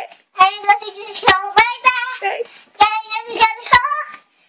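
A young girl singing on her own voice, a run of short held notes that bend in pitch, separated by brief gaps.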